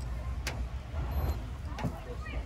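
Low steady background rumble with a single sharp click about half a second in.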